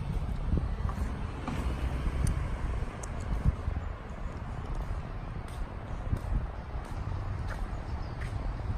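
Outdoor ambience picked up by a walking phone: a low, uneven rumble of wind on the microphone and distant traffic, with a few soft knocks.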